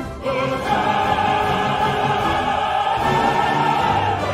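Opera chorus singing with orchestra: a brief break just after the start, then a long held high note.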